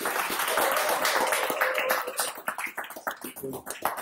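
Audience applauding in a small room. The clapping is dense for about two seconds, then thins out to scattered claps.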